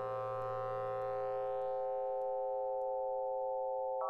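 Eurorack modular synthesizer, an E352 Cloud Terrarium wavetable oscillator patched through a Morpheus filter, holding a sustained chord of steady tones. The bright upper shimmer and a low note fade away over the first couple of seconds, leaving the mid-range chord.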